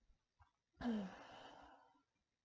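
A woman sighs once about a second in: a short voiced start falling in pitch, then a breathy exhale that fades.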